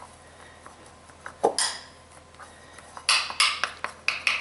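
A metal spoon clinking and scraping against a bowl while working candy dough: a single clink about a second and a half in, then a quick run of taps and scrapes near the end.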